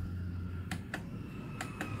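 Front-panel push button of a Matrix Apple III satellite receiver clicking as it is pressed to step through channels: four short clicks in two close pairs, about a second apart.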